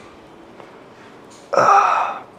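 A man's short groan of strain, falling in pitch, about one and a half seconds in, as he hangs from a pull-up bar stretching his back.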